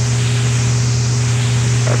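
Steady low hum and hiss of a B-52 bomber's in-flight cockpit interphone recording between crew calls, with a fainter higher tone above the hum.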